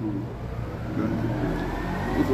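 A motor vehicle's engine in the background, its pitch rising and then falling as it revs or passes. A man's speaking voice can be heard over it.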